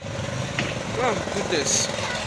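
Busy open-air market ambience: a steady din of vehicle engines and traffic, with distant voices rising and falling through the middle.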